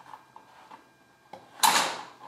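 Wooden Cuisenaire rods clicking faintly, then a short, loud clatter near the end as a handful of rods is picked up and shifted on the table.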